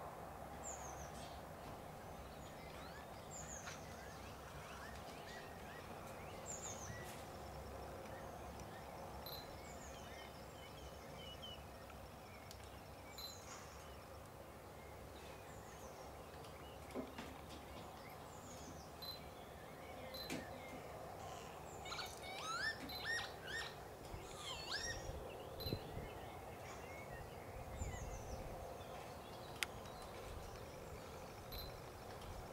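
Small birds calling: short, high, falling chirps every few seconds, with a busier run of calls about two-thirds of the way through, over steady outdoor background noise.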